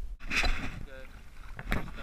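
A largemouth bass hits the water as it is let go, making one short splash about a quarter second in.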